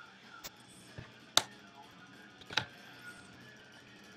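Plastic clips of a Seagate GoFlex Desk hard-drive enclosure snapping loose as a plastic spudger is slid down the seam between its two halves, separating them. There are four sharp clicks, the loudest about a second and a half in.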